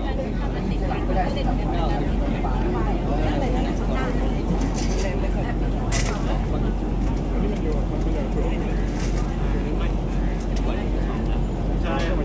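Many people chatting at once, an overlapping babble of voices over a steady low hum, with one sharp click about six seconds in.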